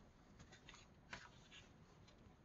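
Near silence, with a few faint brief rustles of hands on the paper pages of a paperback activity book.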